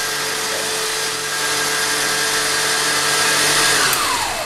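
Electric stand mixer running steadily at speed, whisking cream and condensed milk, its motor whine holding one pitch over a low hum. At the very end it is switched off and the whine begins to fall as the motor winds down.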